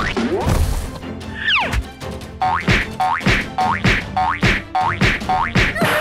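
Cartoon sound effects over background music: a couple of falling whistle-like glides, then a quick run of springy boings, about three a second.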